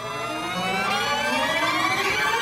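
Horror-trailer riser: a dense stack of tones gliding slowly upward in pitch and steadily growing louder, building tension.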